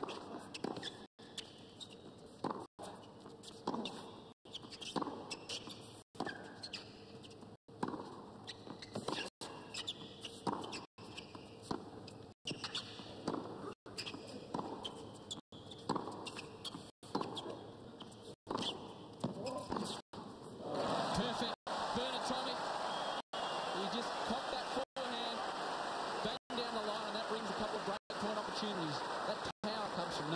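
Tennis rally: racket strikes and ball bounces trading back and forth about every second or so, then, about two-thirds of the way in, the crowd breaks into cheering and applause as the point is won. The sound cuts out briefly at regular intervals throughout.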